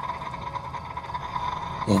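Steady ambient background drone with a single held tone and no change through the pause.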